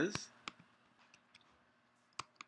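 Faint clicking of a computer mouse and keys while working in the software: a sharper click just after the start, another about half a second in, then a few fainter ticks.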